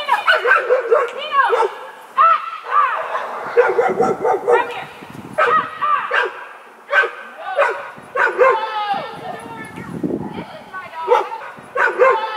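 Dogs barking and yelping in a rapid run of short, sharp barks during a tense standoff, as a pit bull charges at another dog and goes for his neck.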